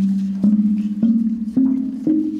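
Metal blades of a Baschet sound structure struck one after another with a mallet, about two strikes a second, each note ringing on over the resonating body. The pitch climbs a step with each strike as the mallet moves to shorter blades.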